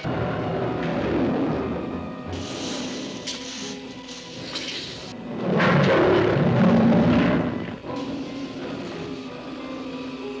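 Dramatic orchestral score from the soundtrack, with a tiger roaring loudly for about two seconds in the middle.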